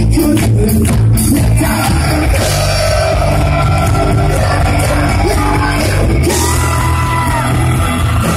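A pop-punk band playing live: electric guitars, bass and drums loud through a hall PA, with a voice singing over them. In the last couple of seconds the singer holds long, sliding notes.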